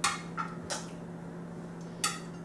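Metal knife and server clicking against a glass baking dish and plate as set gelatin is cut and lifted out: a few light clicks, the first the loudest, over a low steady hum.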